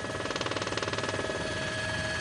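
Steady motor drone with a fast, even throb.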